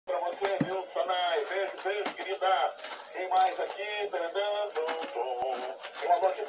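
A high-pitched voice rising and falling in a sing-song way, with a few sharp clicks.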